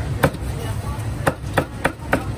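Meat cleaver chopping a crisp fried chicken cutlet on a round wooden chopping board: four sharp strikes, the first a quarter second in and three close together in the second half, over a steady low kitchen hum.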